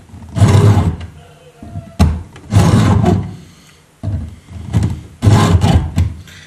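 Ratcheting PVC pipe cutter squeezed in short strokes on plastic pipe: a series of about five short bursts of noise, with a sharp click about two seconds in.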